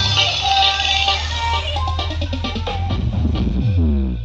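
Electronic dance music played through a large carnival sound system of stacked speakers, with heavy bass and a melodic line. A synth sweep falls in pitch near the end.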